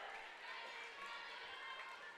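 Faint murmur of a gym crowd, with scattered distant voices and no distinct impacts.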